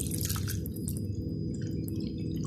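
Thick, syrupy doum palm drink poured in a steady stream from a metal bowl onto a muslin cloth strainer, trickling and splashing as it pools in the cloth.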